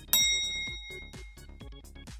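A single bright bell-like ding, a correct-answer chime sound effect, rings out just after the start and dies away over about a second. Under it plays background electronic music with a steady beat.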